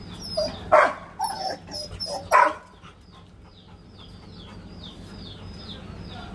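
Labrador retriever barking, a few short sharp barks in the first two and a half seconds. After that a bird chirps over and over in quick short falling notes.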